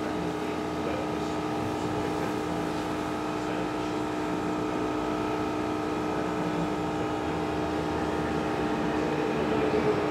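A steady mechanical hum with a low held tone, growing a little louder near the end.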